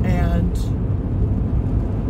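Steady low rumble of engine and road noise inside a moving pickup truck's cab, with a brief bit of a woman's voice right at the start.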